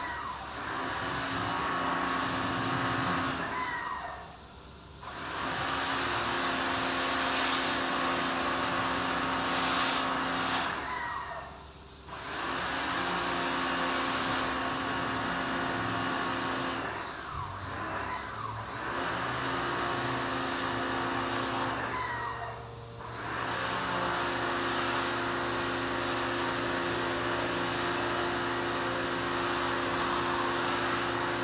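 High-pressure spray washer running with a steady hiss and motor hum. About four times it briefly drops away with a falling whine, then picks back up.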